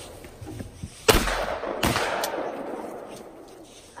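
Shotgun fired at a thrown clay target about a second in, the report ringing out and dying away, followed under a second later by a second, slightly quieter sharp bang.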